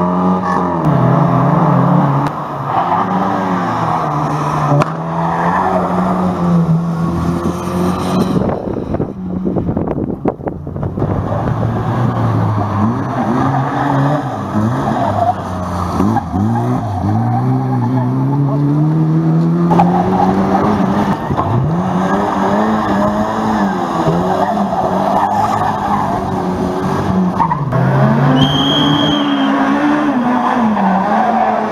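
Classic Lada rally car's four-cylinder engine revved hard, its pitch climbing and dropping again and again through gear changes as it accelerates and slides through corners, with tyres skidding on the asphalt.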